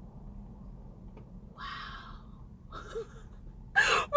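Two short breathy exhales from a woman, a little past the middle, over a low steady background rumble. Her voice comes in loudly near the end.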